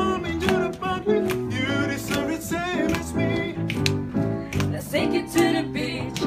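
Mixed choir singing an upbeat pop song over an accompaniment with steady bass notes and a beat of about two strokes a second.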